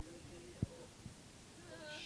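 A sharp knock at the start and a second one just over half a second in, with faint drawn-out vocal sounds between them and a short higher-pitched cry near the end.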